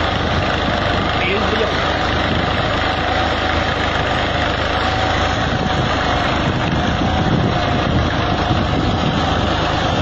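Fiat 480 tractor's three-cylinder diesel engine running steadily under load, pulling a tine cultivator with a spiked roller through tilled soil.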